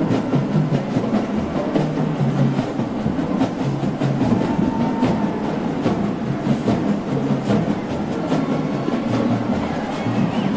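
Marching band playing: drums strike a beat about once or twice a second under changing low pitched notes.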